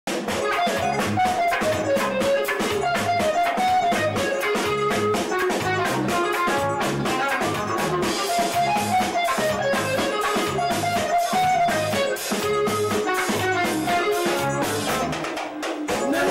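Live band playing an instrumental passage: electric guitar, drum kit and saxophones over a steady beat, with a short break in the bass and drums just before the end.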